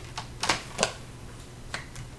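Oracle cards being handled and set down on a cloth-covered table: a few sharp clicks and taps of card stock, the loudest two about half a second and just under a second in.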